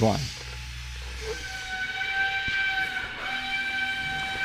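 A steady whistle-like tone with overtones, starting about a second in, over a low hum.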